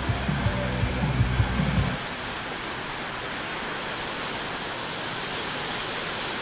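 A radio playing music with a bass line is switched off about two seconds in. That leaves the steady, really loud hiss of rain on the roof of a steel carport building lined with closed-cell spray foam.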